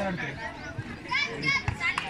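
Girls' high-pitched voices calling out and chattering over a background babble, with a run of higher shouts from about a second in.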